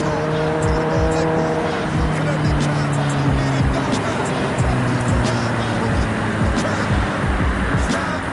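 Suzuki GSX-R 750 inline-four motorcycle engine running steadily, with rap music and its regular drum beat playing over it.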